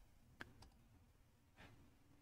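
Near silence broken by a few faint computer mouse clicks, the sharpest about half a second in.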